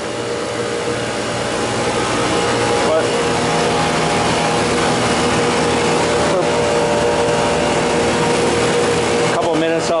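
Refrigeration vacuum pump running with a steady, even motor hum. It is evacuating a walk-in cooler's refrigeration circuit after a compressor replacement, before the R407F charge.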